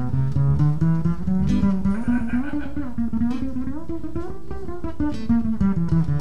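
A small jazz trio of two electric guitars and an upright double bass playing a tune live: plucked guitar lines over a walking bass. The lead guitar bends and wavers its notes through the middle.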